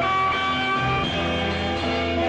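Rock band playing an instrumental passage of a 1960s-style beat song, led by guitar, with sustained melody notes over a bass line.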